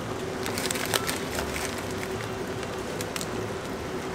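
Bites and chewing of crispy deep-fried curry bread with a panko crust: a scatter of short, crisp crackles over steady street background noise with a faint steady hum.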